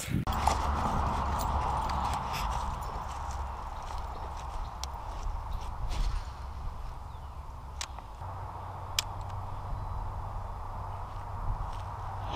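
A few sharp, scattered clicks from handling a baitcasting rod and reel, over a quiet, steady outdoor background hum.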